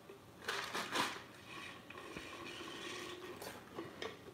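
Drinking from a cup held close to the microphone: short sips and rustling bursts about half a second in and again near the end, with softer scraping of the cup being handled between.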